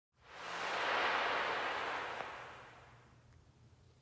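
A soft whoosh of hiss-like noise that swells up within the first second and fades away over the next two: a title-intro sound effect.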